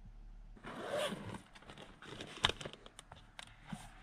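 Bedding and clothing rustling as a person shifts and sits up inside a car, followed by a string of small clicks and taps as things are handled, the sharpest about two and a half seconds in.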